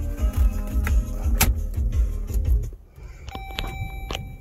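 Music with a heavy bass playing from the car's radio, cutting out almost three seconds in, with a sharp click about a second and a half in. After it cuts out, a faint steady electronic tone and a few light clicks remain.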